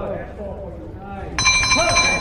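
Boxing ring bell ringing, starting a little over halfway through and held on, marking the end of the round over voices.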